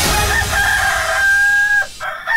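Rooster crowing: one long crow held at a steady pitch that breaks off near the end.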